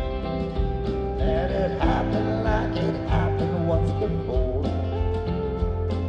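A live country-folk band of grand piano, pedal steel, acoustic guitar and dobro plays an instrumental passage of a slow ballad between sung verses. Gliding slide notes run over sustained chords.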